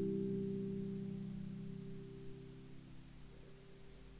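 Final chord of the song on guitar, left ringing and fading steadily until it is barely audible.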